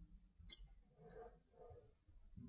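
Marker squeaking on a glass lightboard while writing: three short high squeaks about half a second apart, the first the loudest.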